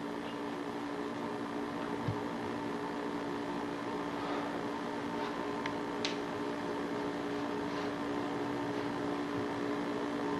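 Steady electrical hum and hiss of an old videotape recording, with a faint knock about two seconds in and a small click about six seconds in.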